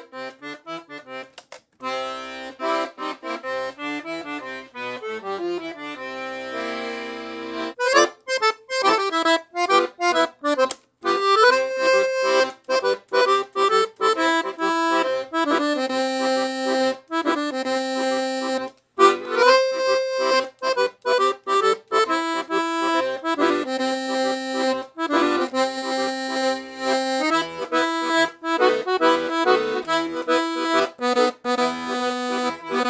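Scandalli 120-bass piano accordion with two-voice LM treble reeds played on its own. It opens with short bass-button notes and held bass chords stepping downward, then from about eight seconds a tune on the treble keys over a steady bass-and-chord accompaniment.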